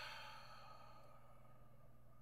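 A man's long exasperated sigh trailing off, fading out over about the first second, then near silence with a faint steady electrical hum.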